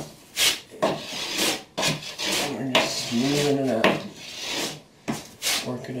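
Trowel scraping and smoothing mortar over Kerdi waterproofing band on cement board, in a series of scraping strokes with one longer stroke about two seconds in. A short voiced hum is heard midway.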